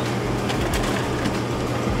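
Steady hum and rushing of a refrigerated display cooler's fans and compressor, with a couple of faint light clicks as a clear plastic clamshell container is handled.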